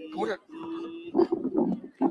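Men's voices close to a microphone, with one voice holding a long, steady drawn-out call from about half a second in, followed by louder broken talk or shouting.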